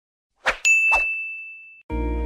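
A short noisy swipe, then a sharp, high metallic ding that rings on for about a second as it fades, with a second brief swipe over it. Music comes in right at the end.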